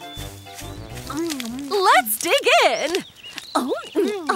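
Voice-acted cartoon hyena cries without words, their pitch swooping up and down, in one longer stretch from about a second in and again near the end. A short stretch of music with held notes fades in the first second.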